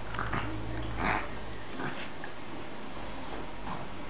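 A Boston terrier and an American hairless terrier play-fighting, making a few short sniffing and breathing sounds, the loudest about a second in.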